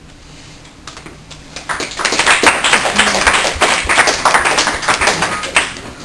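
A small classroom audience applauding at the end of a speech. The clapping starts about a second and a half in and keeps up as a dense patter of separate claps.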